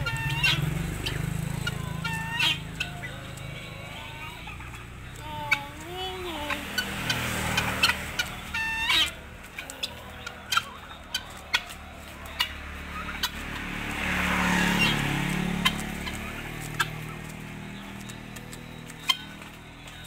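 Turkeys and helmeted guineafowl giving short calls at intervals, one sliding down in pitch about six seconds in, while they peck at papaya leaves held through a wire fence, with sharp pecking clicks.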